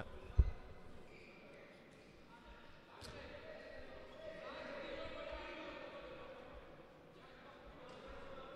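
Faint indoor handball hall ambience: distant players' voices echo in the sports hall, with a sharp thump of the ball on the court about half a second in.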